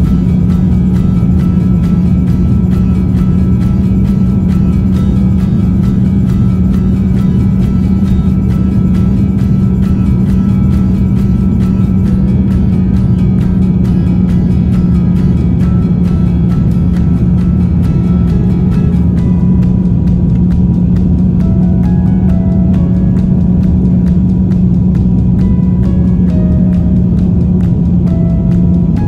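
Steady, loud drone of an airliner cabin in the climb, a deep rumble with a strong constant hum. Music with a few held notes rides over it, becoming more noticeable in the second half.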